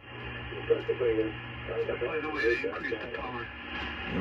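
Flex 5000A software-defined radio receiving a man's voice on the 75-metre band and playing it through a speaker. The thin, narrow-band radio audio switches on abruptly as the receiver starts.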